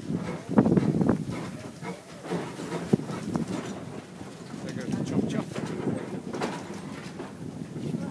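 Small saddle-tank steam locomotive moving slowly past at close range, with irregular clanks and knocks from its running gear and wheels.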